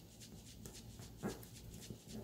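Origami paper being folded and pressed flat by fingers: faint crackles and small clicks of creasing paper, with one brief louder sound just over a second in.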